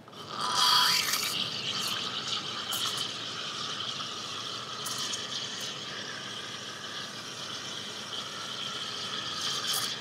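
Espresso machine steam wand frothing cold milk in a stainless steel pitcher for a cappuccino: the steam opens with a loud hiss about half a second in, then settles into a steady hissing with high squealing tones through it as the milk is foamed.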